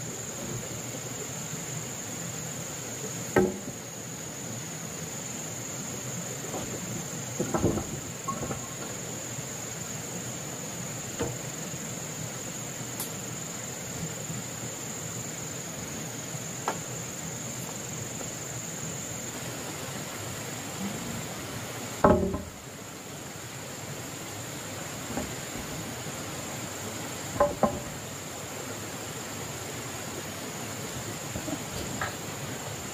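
A steady, high-pitched drone of insects runs throughout. A few scattered knocks cut across it, the loudest about two-thirds of the way in.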